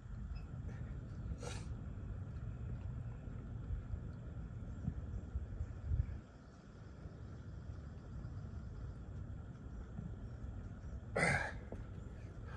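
A man's short, sharp exhales during push-ups, a faint one about a second and a half in and a louder one near the end, over a steady low rumble of wind on the microphone.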